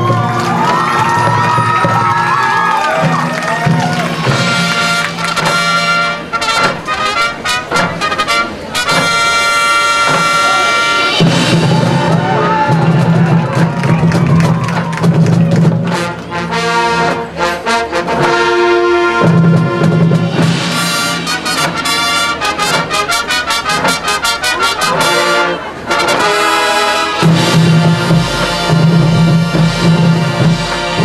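High school marching band playing loud, brass-led music, with trumpets and low brass over the drumline. Stretches of rapid repeated notes and hits come and go.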